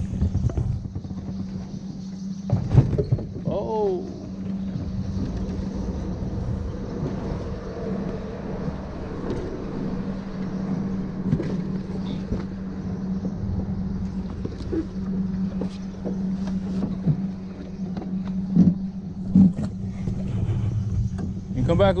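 Electric bow-mount trolling motor, steered by a foot pedal, running at a steady hum. Two short knocks come near the end.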